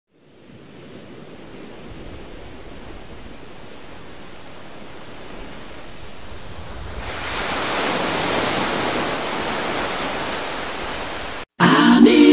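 Surf washing onto a beach: a steady rush of waves that fades in and grows louder about seven seconds in. It cuts off sharply just before the end, where music with voices begins.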